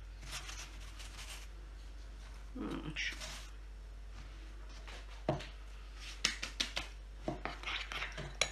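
Light handling sounds on a wooden tabletop: a soft brushing early on as marshmallows are pushed aside. In the second half comes a run of sharp light clicks and knocks of a bowl and spoon being picked up and set down.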